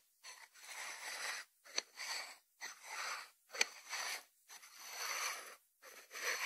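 White ceramic salt dish with its lid being slid and turned on a wooden board by hand: about six rubbing, scraping strokes, with two sharp ceramic clicks in the middle.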